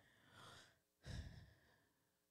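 Faint breathing into a close microphone between phrases: a soft sigh about half a second in, then a fuller breath just after one second.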